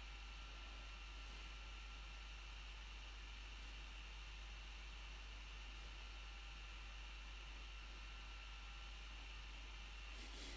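Near silence: faint steady hiss with a low hum, the room tone of the recording microphone.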